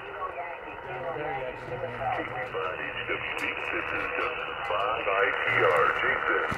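Single-sideband voice from an amateur radio transceiver's speaker: a weak station answering a CQ call. The speech is narrow and muffled under a steady hiss of band noise, and grows a little stronger near the end.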